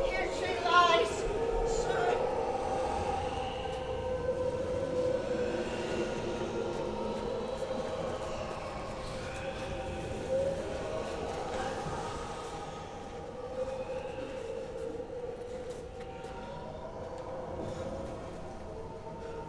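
Stage storm soundscape: long, wavering sustained tones with slow rises and falls in pitch, like howling wind, easing off a little in the second half. A voice is heard briefly at the very start.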